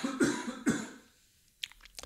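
A man coughing: a short run of coughs in the first second or so, then quiet.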